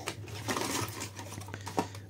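Packaging being handled: a cardboard box insert and a plastic-wrapped charging plug, with faint rustling and a few light clicks over a steady low hum.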